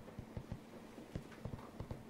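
About ten soft, irregular knocks or taps, closer together in the second half, over a faint steady hum.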